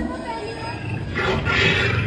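A loud growling roar, of the kind a haunted house plays as a scare sound effect, begins about a second in.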